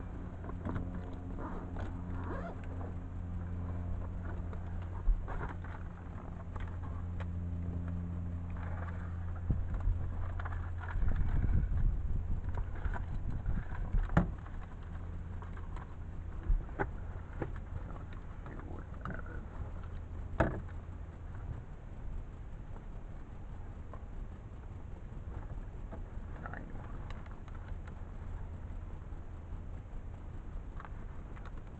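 A steady low hum runs under scattered clicks and knocks from things being handled in a small aircraft's cockpit, with a louder stretch of rustling and bumping about ten to fourteen seconds in.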